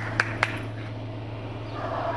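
A few sharp handclaps in the first half second, clapping at a gate to call the people of the house, then stopping over a steady low hum.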